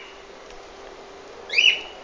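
A dog whining: one short, high, rising cry near the end, part of a cry that keeps repeating about every second and a half.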